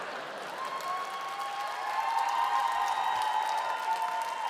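Studio audience applauding and cheering after a sung punchline, a steady patter of clapping with a few drawn-out voices over it.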